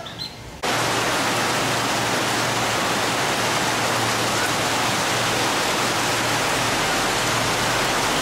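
Heavy rain pouring down in a steady, even hiss that starts suddenly about half a second in.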